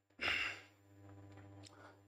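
A man's short sigh, one breathy exhale a fraction of a second in.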